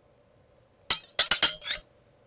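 A quick run of about five sharp clinks with short ringing tails, packed into under a second.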